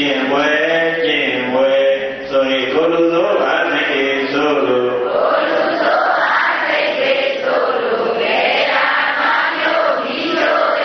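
A monk's voice chanting Buddhist recitation into a microphone in long, held notes; about five seconds in, a crowd of voices takes up the chant together.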